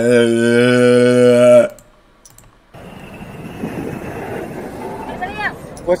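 A man's voice holding one long, loud, steady note for under two seconds, then cutting off. After a second's pause comes a quieter steady outdoor background noise, with a faint voice near the end.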